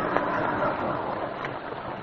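Car engine running as a radio-drama sound effect, a steady drone that eases off slightly near the end, heard through the dull, treble-less sound of an old radio transcription.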